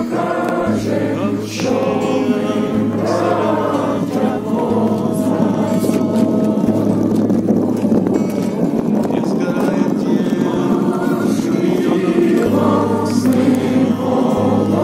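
A crowd of people singing a song together in chorus, with long held notes.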